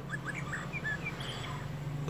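Several short, faint bird chirps, each at a different pitch, scattered through a pause, over a steady low hum.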